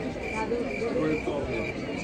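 Cricket-like chirping: a short high chirp repeating about four times a second, steady in pitch, over faint background voices.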